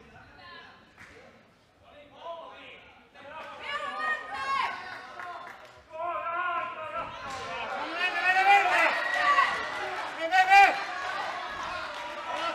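Men's voices shouting around a kickboxing ring during an exchange, getting louder and more crowded about halfway through.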